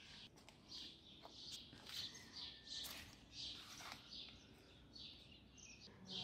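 Faint bird chirps: short high notes repeating every half second or so over a quiet background.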